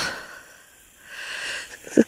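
A short, hissing breath intake close to the microphone, about a second and a half in, after a brief lull.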